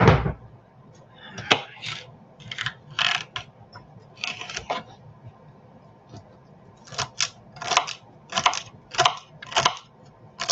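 A kitchen drawer shutting with a thump at the start, then a small knife chopping celery on a wooden chopping board: a string of short crisp chops, roughly one to two a second, with a pause about halfway through.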